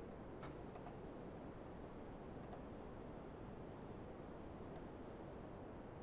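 Faint computer mouse clicks: three short paired clicks about two seconds apart, over a steady low hiss.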